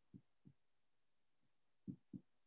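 Near silence, broken by a few faint, short, low thumps: two near the start and one near the end.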